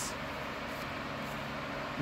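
Steady background room noise: a low, even hum with hiss and no distinct events.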